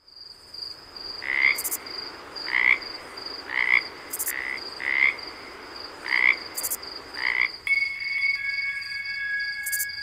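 Night-time frog-and-insect sound effect: a frog croaking about once a second, seven times, over a steady high insect trill. A few held high tones come in near the end.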